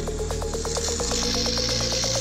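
Battery-powered toy train engine motors running with a thin whine that slowly rises in pitch and a rapid, even clicking of about ten a second, heard under electronic background music with steady low bass notes.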